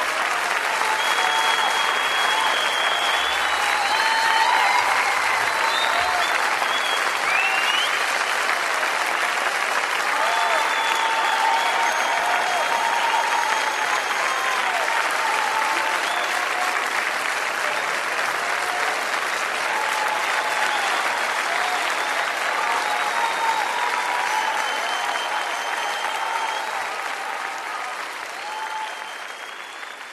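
Concert audience applauding, with scattered shouted cheers and whistles through the clapping; the applause fades out over the last few seconds.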